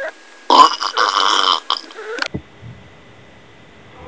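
A person burping loudly: one long, raspy burp lasting nearly two seconds, starting about half a second in.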